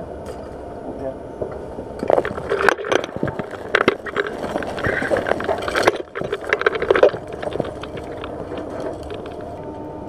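Steady hum of the space station's cabin equipment, with a few seconds of rustling, clicks and knocks in the middle as spacesuit parts and tools are handled at the hatch.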